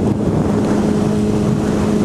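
Honda CBR600RR's inline-four engine running at a steady pitch while cruising, with wind rushing over the microphone.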